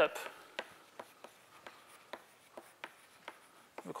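Chalk writing on a blackboard: an uneven series of short, sharp taps and ticks as the chalk strikes and lifts off the board while symbols are written.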